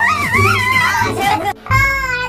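A high-pitched voice shouting excitedly with a wavering pitch over background music. It cuts off suddenly about one and a half seconds in, and another voice starts.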